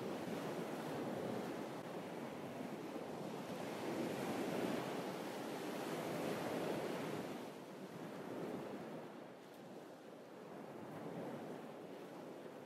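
Small waves washing up onto a sand and pebble beach, the surf swelling and easing in slow surges.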